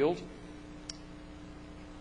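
A single short click about a second in, in a pause after a man's last word, over a steady low hum; the click comes as the lecture slide is advanced.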